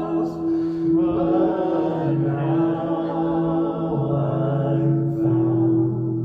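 Slow church worship music: voices singing long held notes over a steady sustained note, with a lower bass note that changes every second or two.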